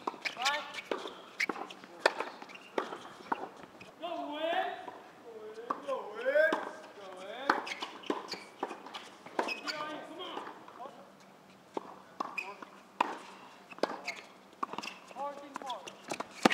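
Tennis practice on a court: repeated sharp knocks of rackets striking balls and balls bouncing at an irregular pace, with short gliding squeaks, mostly between about four and seven seconds in.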